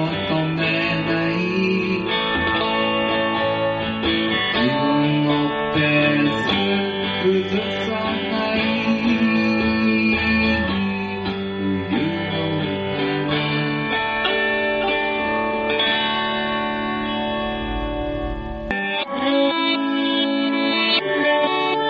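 Recorded band music led by guitar. The bass end drops out near the end.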